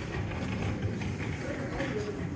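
Footsteps on a hard floor over a low, steady background rumble.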